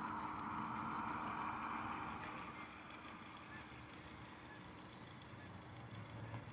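Electric motors and geared drivetrains of radio-controlled rock crawlers whirring steadily as they creep very slowly in a tug of war, the whir fading down after about two seconds.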